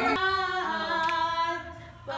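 Voices singing a cappella in harmony, holding one long chord that fades near the end.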